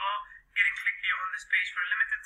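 Only speech: a person talking, the voice thin and tinny like a telephone line, with a short pause about half a second in.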